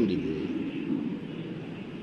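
A pause in a man's speech: steady background noise of a crowded room, with faint voices in the first half.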